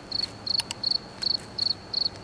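Cricket chirping, a high chirp repeated about three times a second: the stock "awkward silence" comedy sound effect.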